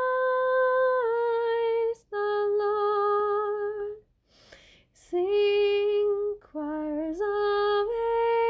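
A woman singing a Christmas hymn solo and unaccompanied, in long held notes that step up and down, with a short pause about halfway through.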